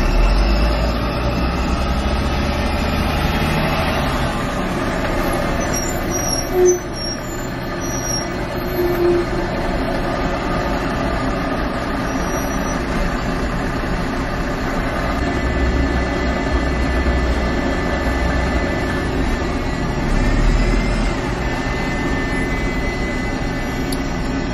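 City traffic with buses heard from inside a car: a steady noise of engines running close by, with a low engine rumble that swells at the start and twice more later on. Two short tones sound about two seconds apart a few seconds in.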